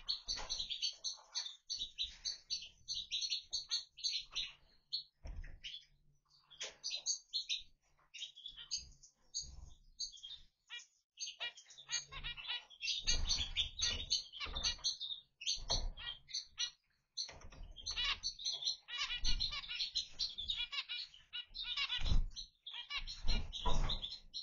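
A pair of zebra finches calling over and over with short, nasal, horn-like beeps, with a few brief pauses.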